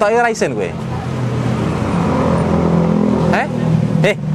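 A motor vehicle's engine running close by, a steady low hum that swells through the middle and fades away about three seconds in. A few words of speech come at the very start.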